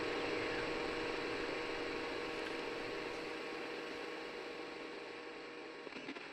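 A steady static-like hiss with a faint steady hum beneath it, slowly fading; the hum stops just before the end.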